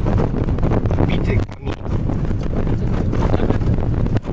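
Car driving on a rough dirt road, heard from inside the cabin: a loud, continuous low rumble with many short knocks and rattles from the bumpy surface.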